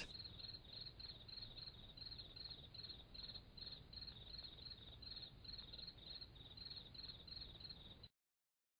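Faint crickets chirping, an even pulse of about three or four chirps a second, cutting off suddenly at the end.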